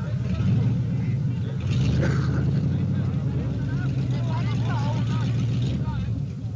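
Engine of an off-road jeep stuck in a mud pit, running steadily, a little louder about half a second in and again around two seconds in, with spectators' voices over it.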